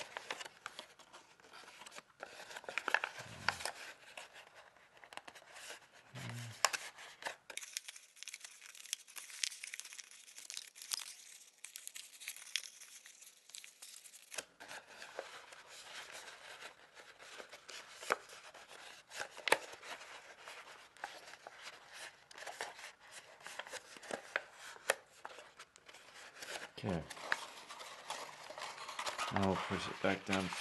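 Thick origami paper crinkling and rustling in irregular crackles as hands fold and press a densely pre-creased sheet into its twist pattern.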